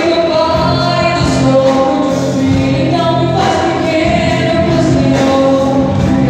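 Live gospel worship music played through PA speakers: singers with a band of keyboard, electric guitars and drums, voices holding long sung notes over a steady accompaniment.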